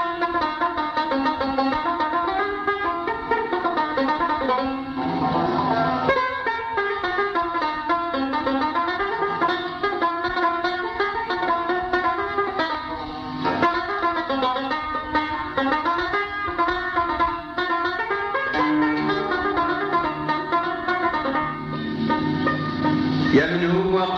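Instrumental passage of Algerian chaabi music: plucked string instruments play fast, busy melodic runs without singing.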